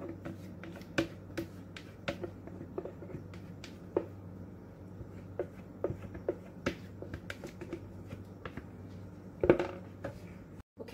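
A spatula scraping batter from a plastic bowl into a hot cast-iron skillet: scattered sharp ticks and pops over a steady low hum, with one louder knock shortly before the end.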